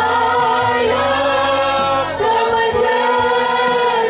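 Group singing a slow hymn, with a man's voice leading through the microphone. The notes are long and held, changing pitch every second or two.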